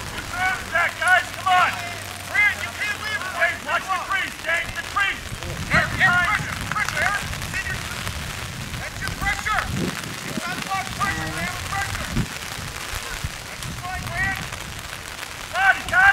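Voices of players and spectators shouting and calling across a lacrosse field, heard as many short raised calls with no close talk, over a steady background hiss.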